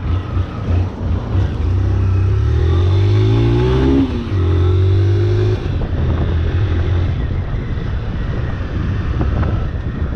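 Single-cylinder 160 cc motorcycle engine under way: its pitch climbs as it accelerates, drops sharply about four seconds in at a gear change, holds briefly, then eases off about halfway through as the bike slows down.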